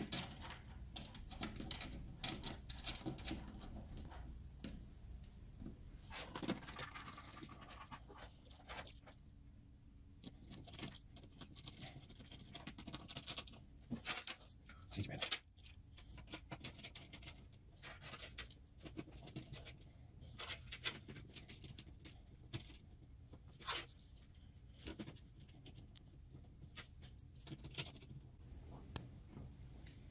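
Faint, scattered metallic clicks and rattles as round metal multi-pin cable connectors are fitted into the sockets of a CNC controller box.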